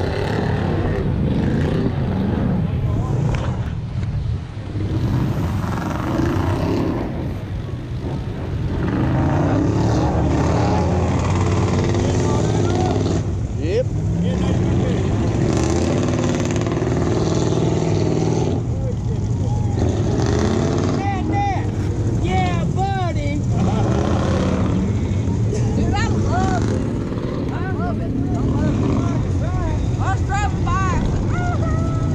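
ATV engines running and revving through mud, the nearest one carrying the camera. From about two-thirds of the way in, repeated short high curving chirps come in over the engines.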